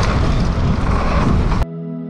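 A loud, dense rush of wind-like noise with a deep rumble under it, cutting in abruptly and stopping suddenly about one and a half seconds in.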